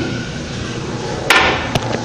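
Toilet seat being dropped shut onto the porcelain bowl: one sharp clack past the middle, then a lighter click shortly after.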